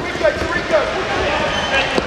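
Indistinct voices and shouts echoing in an indoor hockey hall, over sharp clacks of inline hockey sticks and puck on the plastic court floor, one of them loud near the end.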